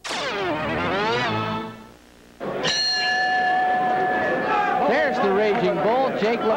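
Garbled broadcast audio from a VHS tape glitch, sliding down in pitch for about two seconds, then a boxing ring bell struck once about two and a half seconds in and ringing on for nearly two seconds, signalling the start of a round; voices follow near the end.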